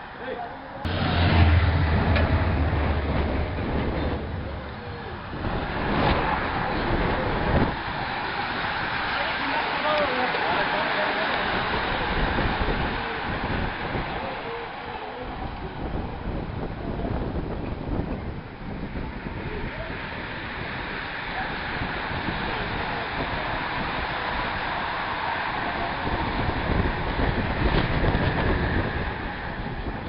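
A pack of racing bicycles passing along a street, heard as a steady rush of noise with people's voices mixed in. Wind buffets the microphone heavily for a few seconds near the start.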